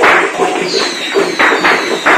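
Firecrackers going off in loud, irregular bursts, mixed with procession music.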